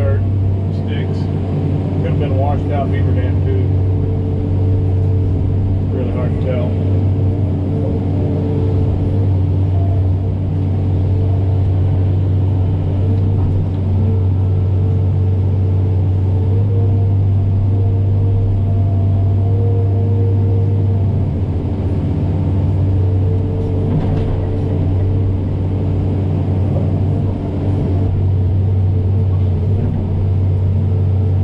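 John Deere excavator's diesel engine running steadily under load, heard from the cab, with hydraulic tones that shift as the boom and bucket work. A few short knocks from the bucket handling mud and sticks stand out over the engine.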